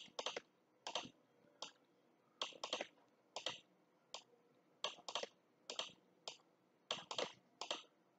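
Faint, sharp computer mouse button clicks, often in quick press-and-release pairs, at irregular intervals of about one or two a second, as anchor points are placed with Photoshop's pen tool.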